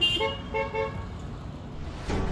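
Car horn honking three short toots in quick succession in the first second, a friendly greeting from a passing car.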